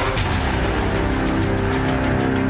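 TV news programme's theme music in the intro sequence: a whoosh sweep just after the start, then sustained chords with the beat dropped out.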